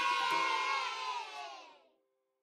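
A group of children cheering and shouting over the tail of an outro jingle, fading out near the end.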